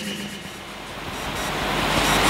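An even, rushing hiss-like noise that swells gradually louder over the second half.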